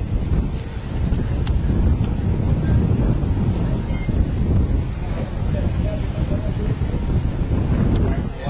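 Wind buffeting the microphone: a loud, uneven low rumble throughout.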